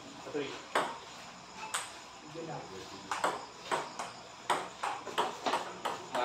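Table tennis rally: a celluloid ping-pong ball clicking off the paddles and the table, a string of sharp, irregular clicks roughly every half second to a second.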